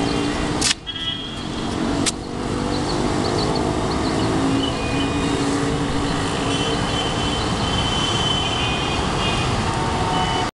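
Road traffic moving through a city roundabout: a steady din of engines and tyres, with car horns sounding now and then. Two sharp clicks come about a second and a half apart, the first under a second in.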